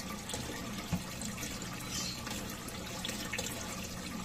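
Water trickling steadily in a turtle tank, with a short knock just under a second in.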